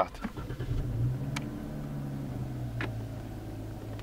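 Dodge Challenger SXT's 3.6-litre V6 started by push button, heard from inside the cabin: a brief crank, the revs flaring up about a second in, then settling to a steady idle. Two faint clicks are heard during it.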